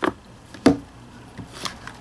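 A cardboard box and its loose lid being handled: a sharp knock about two-thirds of a second in, with fainter taps at the start and near the end.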